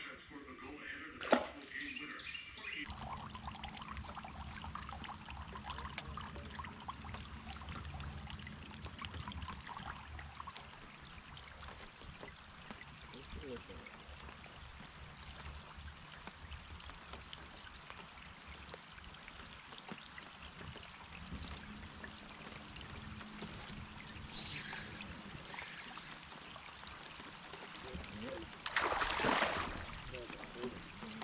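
Water lapping and trickling around a fishing boat's hull, with a sharp knock about a second in. Near the end a hooked bass thrashes at the surface beside the boat, a loud splash lasting about a second and a half.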